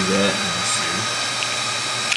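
Cooling fans of a running Cisco ISR 4431 router giving a steady, even noise, with a faint high steady tone. The router is known as a really loud, power-hungry unit.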